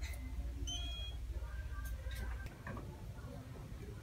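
Shop background sound: faint distant voices, a brief electronic beep about a second in, and a low rumble that drops away about two and a half seconds in.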